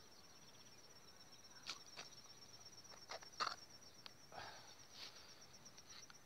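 Near silence outdoors: a faint, steady, high-pitched insect trill, with a few faint scattered clicks and rustles.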